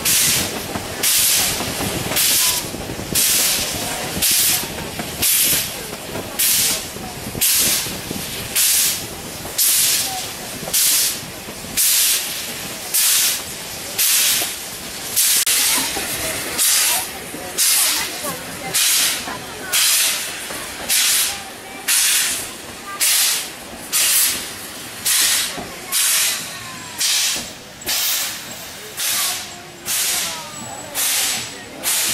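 Narrow-gauge steam locomotive working under steam, its exhaust chuffing in a steady rhythm of a little over one beat a second, heard from a coach behind it.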